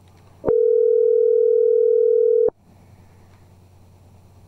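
Telephone ringback tone of an outgoing call ringing at the far end: one steady two-second ring tone that starts about half a second in and cuts off sharply, heard through the phone line.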